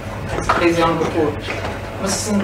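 A person's voice speaking, the words not made out.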